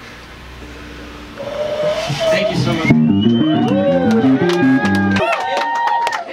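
A band ends a song with a quick run of stepped low notes, which cuts off abruptly a little after five seconds in. Whoops and shouts from the players ride over it, and they go on after the music stops.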